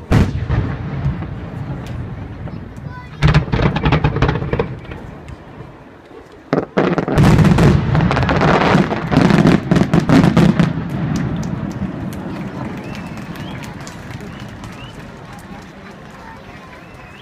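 Aerial fireworks shells bursting overhead: a sharp bang at the start, a burst with crackling about three seconds in, then a long run of bangs and crackles from about seven to eleven seconds, fading out over the last few seconds.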